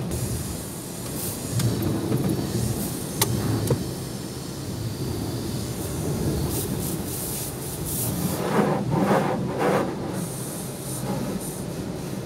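Steady low mechanical rumble at an automatic car wash, heard from inside the car's cabin, with a few sharp clicks and a couple of short hissing surges about three-quarters of the way through.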